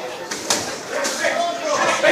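Boxing gloves landing: two sharp smacks close together about half a second in, over the shouting and chatter of a ringside crowd in a hall.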